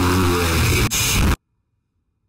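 A man's laughing voice, heavily distorted and very loud, cut off abruptly about a second and a half in, leaving dead silence.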